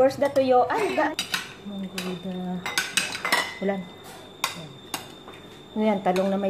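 Metal serving spoons clinking against ceramic bowls and a metal rice pot as the dishes are handled: a scattered series of sharp clinks.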